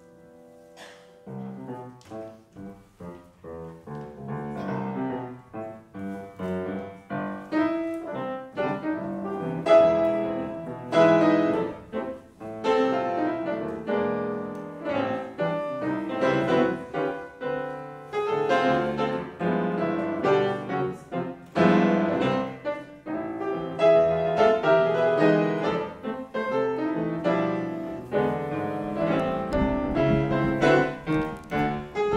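Solo grand piano playing. A held chord dies away, then a new passage starts softly about a second in and grows louder, with strong struck chords from about ten seconds on.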